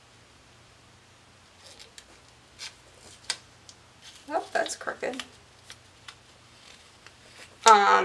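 Faint rustles and small clicks of a paper planner sticker being handled and pressed onto a planner page, with a few quiet spoken words about halfway through and louder speech starting just before the end.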